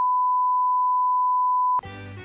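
Steady 1 kHz reference test tone of the kind played with colour bars, a single pure beep that cuts off suddenly near the end.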